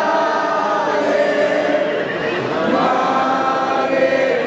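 Crowd of many voices singing together in unison, a sung phrase with long held notes.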